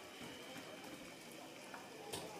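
Faint, steady background room tone with a faint high hum running through it, and no distinct sound events.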